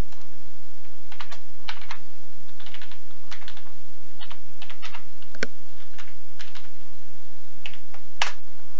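Computer keyboard typing: a dozen or so irregular keystroke clicks, the sharpest about five and a half seconds in, as a web address is typed.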